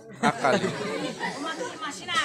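Only speech: a voice speaking stage dialogue, with chatter around it.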